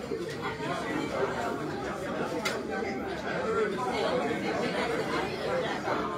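Indistinct chatter of many people talking at once in a large room, with a light click about two and a half seconds in.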